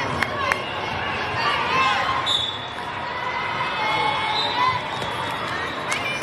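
A volleyball bounced on the court floor, two sharp bounces in the first half second, over steady crowd chatter and voices in a large hall.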